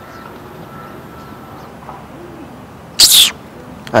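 Quiet outdoor background with a faint low cooing call, like a dove's, about two seconds in, then a brief sharp hiss about three seconds in.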